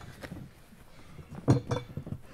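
An old metal-edged travel trunk being handled after it is set down: a few small clicks and one sharp knock about one and a half seconds in.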